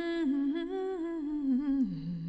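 A woman humming a wordless a cappella melody, one held line with vibrato that drifts around one pitch and drops lower near the end.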